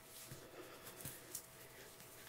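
Faint, soft rustling of a satin corset and its laces as hands behind the back tuck the modesty panel back under the lacing, a few small scuffs over quiet room tone.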